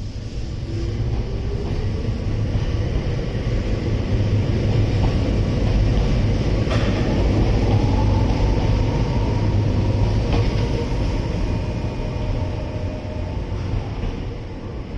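Kobe Electric Railway 3000-series electric train pulling out of the station: low rumble of wheels on rail with a motor whine rising in pitch as it accelerates. It grows louder as the cars pass, with two sharp clicks about seven and ten seconds in, then eases off as the train moves away near the end.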